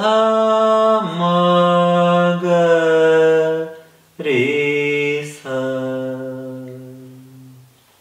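Unaccompanied male voice singing the notes of the Abhogi raga's scale in Carnatic style, slow long-held notes stepping downward in pitch, the last one fading away near the end.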